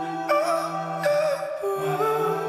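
Slow ambient music: held notes that shift in pitch every half second or so over a steady low drone.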